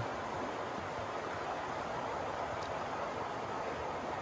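Steady rushing of flowing river water, an even hiss with no distinct splashes or clicks.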